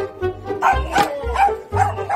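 Background music with a steady bass beat; from about half a second in, a dog barks repeatedly over it.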